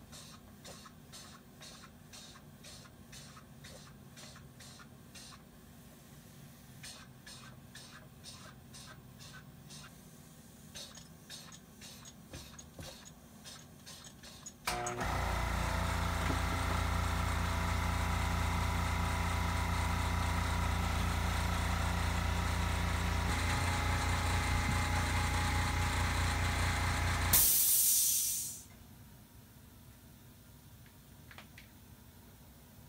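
Faint rapid ticking for about the first fifteen seconds, then an air compressor starts suddenly, runs steadily with a low hum for about thirteen seconds, and shuts off with a short sharp hiss of air released at cut-off.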